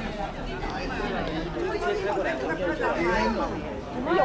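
People chatting nearby amid a crowd of passing pedestrians, with continuous talk that is not intelligible as a single speaker.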